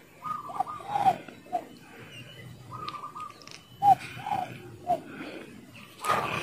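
Wild dove (cu rừng) cooing in two phrases about two and a half seconds apart. Each phrase is a flat higher note followed by three short, lower coos.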